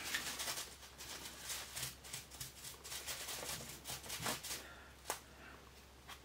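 Makeup brushes being rummaged through: a run of light clicks and rustles of brush handles knocking together, with one sharper click near the end.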